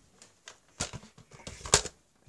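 A few scattered knocks and taps, the two loudest about a second apart: handling noise and footsteps of someone walking while holding a tablet and a toy blaster.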